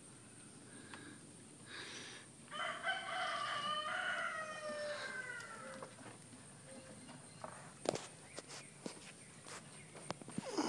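A rooster crowing once, a call of about three seconds that drops in pitch at its end, followed near the end by a few short knocks.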